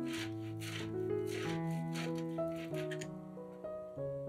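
Background music with soft held notes. Under it, a boiled egg is grated on a stainless steel box grater, with rasping strokes about two a second that thin out near the end.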